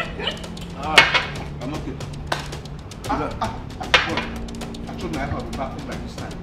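Men's voices in conversation over soft background music, with a sharp loud voice sound about a second in.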